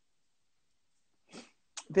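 Dead silence for over a second, then a short faint breath-like sound about a second and a half in, and a woman's voice starting right at the end.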